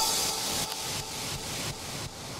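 A hissing noise wash closes the soundtrack, with a faint fluttering pulse. It sets in sharply as the beat stops and fades steadily down.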